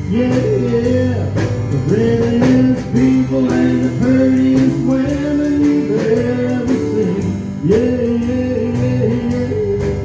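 Live country band playing: electric guitar, bass guitar and keyboard over drums, with a lead melody that bends up and down in pitch.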